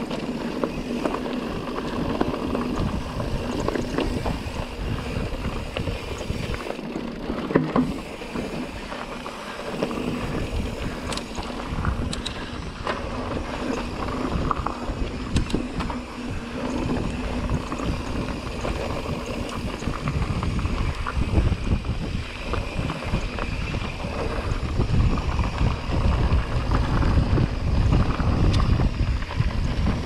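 Wind buffeting the microphone over the rumble and rattle of a Pivot Trail 429 mountain bike rolling over rocky dirt singletrack, with scattered clicks and knocks from stones under the tyres. It grows louder in the last third as the ride gets rougher.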